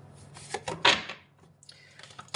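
A deck of cards being shuffled by hand: a short run of card clicks and one loud rasping swipe of the cards about a second in.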